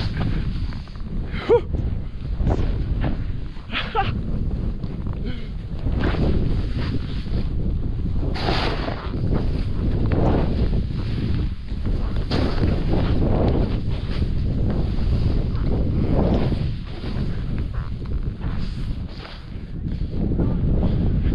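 Wind buffeting the microphone of a pole-held action camera while a snowboard rides through deep powder snow. Irregular swells of rushing, hissing noise come every second or two as the board turns and sprays snow.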